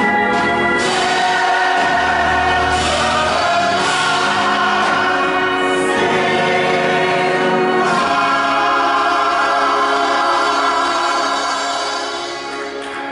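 Church choir singing a gospel song in held, sustained chords; the singing dies away near the end.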